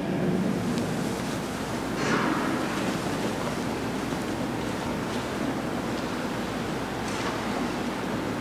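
Steady hiss of room noise in a large church, with a few faint brief sounds over it, the strongest about two seconds in.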